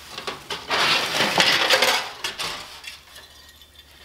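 Hands rummaging through decorations in a plastic storage tote: rustling with a few light clicks and clinks, loudest from about one to two and a half seconds in.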